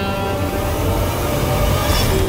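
A rumbling, hissing whoosh swelling under the fading background score, a dramatic transition sound effect that grows brighter toward the end.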